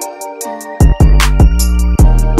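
Melodic R&B/trap instrumental beat: sustained melodic chords over a run of quick high ticks, with deep bass notes and a drum hit coming in just under a second in.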